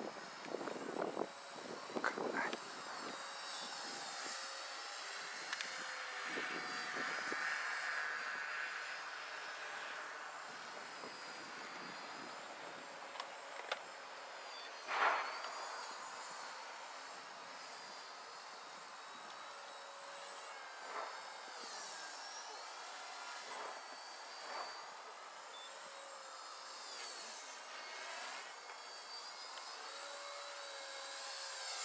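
Faint high whine of a WLtoys V120D02S radio-controlled helicopter's electric motor and rotor in flight, wavering up and down in pitch as it manoeuvres. A few short knocks near the start and a louder one about halfway through.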